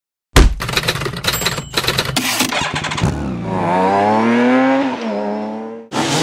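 A sudden loud hit, then a motorcycle engine crackling and popping unevenly before revving up in a rising note, easing back and holding a steady tone until it cuts off abruptly.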